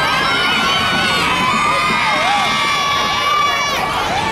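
Parade crowd cheering and shouting, with many children's voices among them. Several voices hold long, high calls that overlap.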